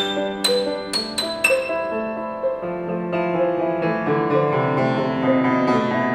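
Grand piano played solo, improvised: a few sharp high notes struck about half a second apart in the first second and a half, then chords left ringing over lower bass notes.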